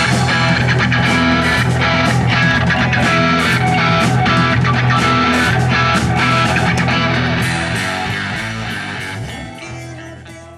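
Rock band playing, led by electric guitar, fading out over the last few seconds.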